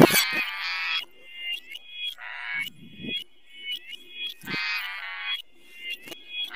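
Pitch-shifted, distorted cartoon-intro audio in the 'G major' edit style: a run of short, high, squawk-like tones with brief gaps between them. Three longer, fuller sounds are mixed in, one near the start, one about two seconds in and one about four and a half seconds in.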